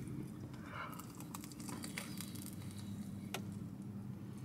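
Faint eating sounds: biting into and chewing a crunchy-crusted pepperoni pizza, with a few soft crunches and clicks, over a low steady hum.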